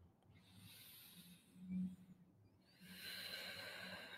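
Faint slow breathing of a person holding a standing yoga pose. A brief low sound comes near the middle, and a soft breathy exhale starts about three seconds in.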